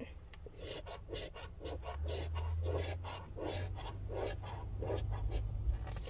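Scratch-off lottery ticket being scraped with a small round scratcher, a quick run of short rasping strokes, about two to three a second, rubbing off the scratch coating.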